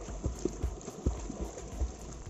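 Water splashing and slapping in quick, uneven beats, about three or four a second, as a swimmer kicks in muddy river water behind a float of plastic jerrycans.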